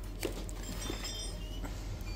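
A few light clicks and clinks as a laptop bag is handled, its metal zip pulls knocking, over a steady low hum.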